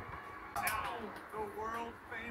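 Faint, indistinct speech at a low level.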